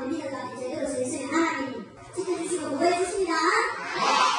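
A man preaching in Korean in a recorded sermon, in two phrases with a short pause about two seconds in.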